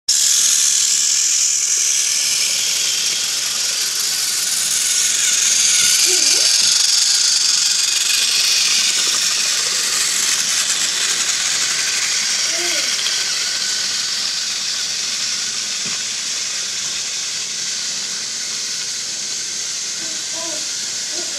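Battery-powered TrackMaster toy train's small electric motor whirring steadily on plastic track, slowly growing fainter toward the end.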